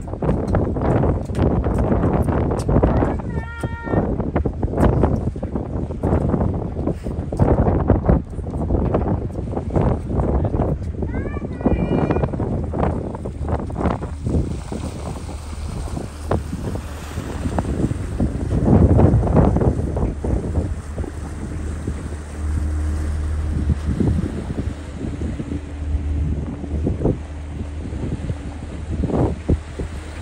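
Wind gusting on the microphone on the open deck of a lake passenger ship under way. The ship's engine is a steady low hum that stands out more in the second half, and there are a few brief calls or voices early on.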